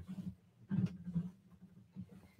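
Quilt fabric being bunched and pushed around a sewing machine, rustling and bumping in a few soft, irregular bursts.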